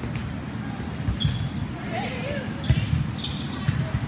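Volleyballs being played in a gym: several separate sharp thuds about a second apart as balls are struck and hit the court floor.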